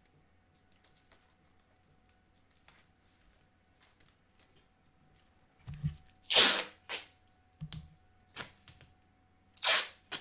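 Masking tape being pulled off the roll in long strips and torn, for tin-foil-and-tape patterning. After a quiet stretch, two loud ripping pulls come about six and a half seconds in and again near the end, with shorter rips and knocks of handling between them.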